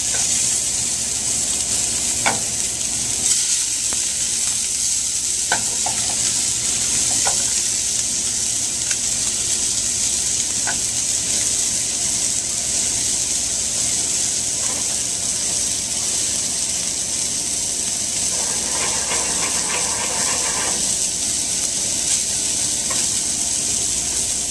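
Sea scallops and flour-dusted flounder fillets searing in hot oil in a stainless steel sauté pan: a steady, even frying sizzle, with a few light clicks.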